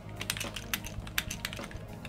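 Typing on a computer keyboard: a quick, uneven run of key clicks, about five keystrokes a second.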